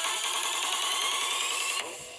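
Beatboxed vocal effect through a voice-processing app: a fast, drill-like buzzing trill with a thin whistle rising in pitch over it, cutting off suddenly near the end.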